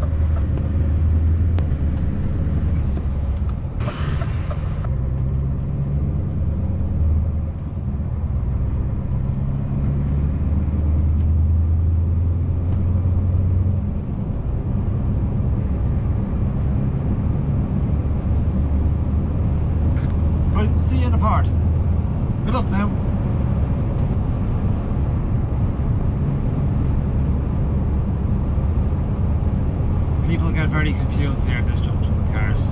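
Scania S650's V8 diesel engine running under load in the cab as the truck gathers speed. The low engine note holds steady, with short dips and shifts in level a few times that fit gear changes. A brief hiss comes about four seconds in.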